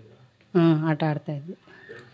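A woman's voice: a short spoken phrase starting about half a second in, then a few quieter sounds from her.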